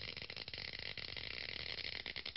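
Electric arc sound effect: a steady, fairly faint crackling buzz of sparks.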